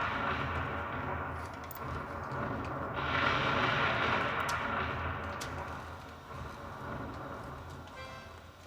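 Crowd noise, rising sharply about three seconds in and then fading away.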